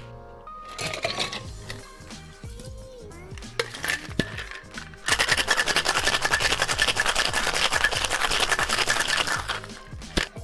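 Boston shaker shaken hard with ice for a cocktail, a loud, fast rattle of ice against the metal tins. It starts about five seconds in, after a couple of metal clinks, and stops just before the end, over background music.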